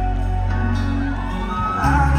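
Live band music from the stage: held keyboard chords over a deep, steady bass, with a few sliding notes coming in near the end.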